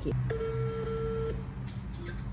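Telephone ringback tone of an outgoing call heard through a phone's loudspeaker: one steady mid-pitched tone about a second long while the call waits to be answered.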